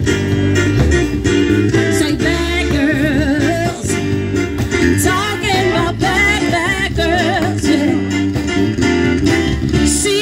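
A live band playing, with singing and guitar over steady bass notes and a beat about once a second.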